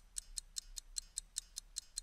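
Steady clock-like ticking of a quiz countdown timer sound effect, about five ticks a second, marking the time left to answer the question.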